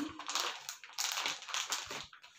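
Clear plastic packaging bag crinkling and rustling in irregular crackles as it is pulled open by hand.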